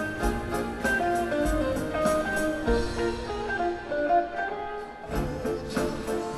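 Live rock band playing an instrumental passage, with an electric guitar picking out the melody over the band. Near the end the band thins out for a moment, then comes back in full about five seconds in.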